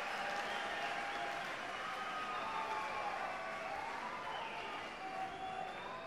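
Concert crowd applauding, the clapping slowly dying away, with long wavering cheers and whistles rising and falling over it.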